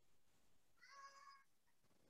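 Near silence, with one brief, faint tone made of several steady pitches together, about a second in.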